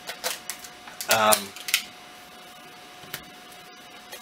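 A few short, sharp clicks and taps from a small cardboard collectible box being handled and opened, most of them in the first second, with a couple more spread later.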